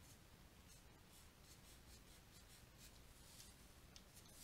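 Faint scratching of a stylus on a drawing tablet: a run of short strokes as a zigzag line is drawn.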